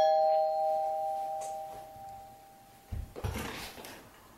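Two-note doorbell chime, a higher note then a lower one, ringing on and fading away over about three seconds. A few low thumps and a rattle follow near the end.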